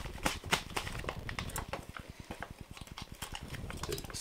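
Foil paydirt pouch crinkling and crackling in the hands as it is picked at to open it: a dense, irregular run of small crisp clicks.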